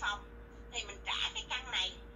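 Speech only: a woman talking in Vietnamese, with a short pause early on.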